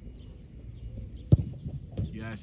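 A football kicked hard once, a sharp thump a little over a second in, followed by a few softer thuds as a goalkeeper dives low to the ground.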